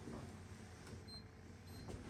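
Handheld laser distance meter giving a short, high beep about a second in as it takes a reading, over faint room sound.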